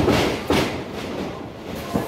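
Wrestling ring canvas and boards rumbling and thudding under the wrestlers' feet as they grapple, with a sharp thud about half a second in.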